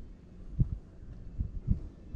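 Low, muffled thumps and rumble right at the microphone, with a few separate soft knocks about half a second in, near one and a half seconds, and again shortly after.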